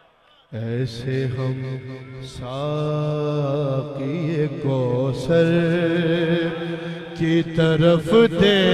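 A man singing a manqabat verse into a microphone through a sound system, in long held notes that waver and glide in pitch. He starts about half a second in, after a moment of silence.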